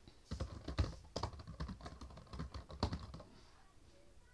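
Typing on a laptop keyboard: a quick, irregular run of key clicks that stops about three seconds in.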